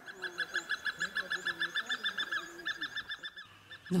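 Hornbills calling in an evening duet: a rapid, even run of short calls, about seven a second, with a short break past the middle, stopping shortly before the end.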